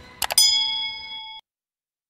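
Subscribe-button animation sound effect: two quick mouse clicks, then a bright bell-like notification ding that rings for about a second and cuts off suddenly.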